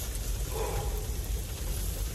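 Steady rain falling, heard from under an open car tailgate, with a low rumble underneath.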